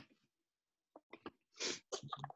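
A person sneezing once near the end, after a few short catching breaths, heard faintly over a video-call connection.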